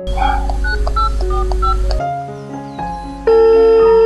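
Mobile phone keypad beeps as a number is dialled, a quick run of short tones at changing pitches, then a loud steady ringing tone for about a second near the end as the call rings through.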